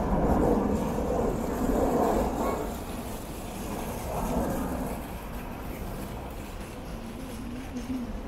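Outdoor crowd ambience: nearby pedestrians' voices, louder in the first couple of seconds and then more distant, over a steady low rumble.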